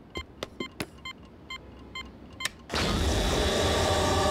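Cartoon time-machine sound effect: a run of short electronic beeps, several a second, then about two-thirds of the way through a sudden loud rushing whoosh as the machine whisks its passenger away.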